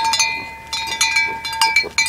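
A small bell, most likely on a goat's collar, clinking rapidly and ringing on between strikes as goats jostle around a feed cup.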